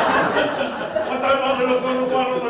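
Audience laughter in a hall fading out about a third of a second in, followed by an actor's drawn-out spoken voice on stage.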